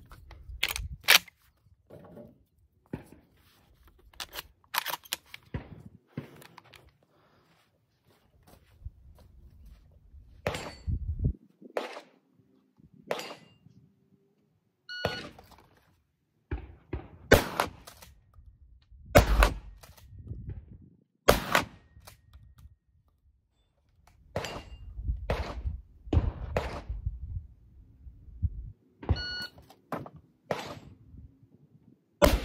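Shot-timer beep, then three shots from a pump-action 12-gauge shotgun firing 2¾-inch slugs, about two seconds apart. Before it come a few sharp clicks and knocks, after it some clattering, and a second timer beep sounds near the end.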